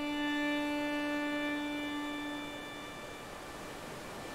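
Solo violin holding one long low note that slowly fades away over about three seconds, leaving only soft lingering tones near the end.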